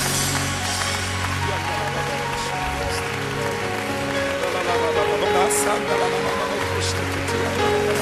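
Live worship band music with no lead voice: held keyboard chords over a bass line, with a steady noisy wash on top and a few short, sharp high hits.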